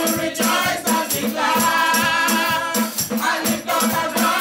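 Live gospel praise music: a lead singer and a group of backing singers singing over a drum kit that keeps a steady beat.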